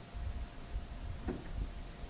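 Quiet room tone through a lecture microphone: a low rumble with a faint steady hum, and one faint brief sound about a second and a half in.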